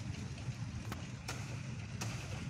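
Two sharp knocks about a second in, from a blade chopping at palmyra palm fruit stalks up in the tree, over a steady low hum.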